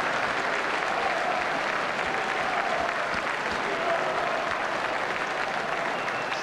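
Rugby stadium crowd applauding steadily after a try is scored.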